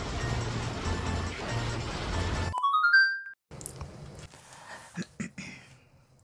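Background music with a bass line that stops about two and a half seconds in, capped by a quick rising run of chime-like notes. A brief silence follows, then quiet room noise with a few soft clicks and knocks.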